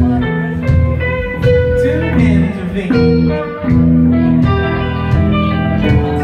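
Live rock band playing: electric bass, keyboards, electric guitar and drums, with held notes over a steady beat and repeated cymbal hits.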